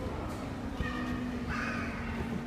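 A young child's short, high-pitched vocal sounds, once about a second in and again near the end, over a steady low background hum.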